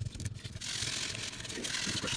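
Paintbrush scrubbing acrylic stain over the rough, textured crackle-paste and clay surface of a diorama, a steady scratchy scrubbing that starts about half a second in.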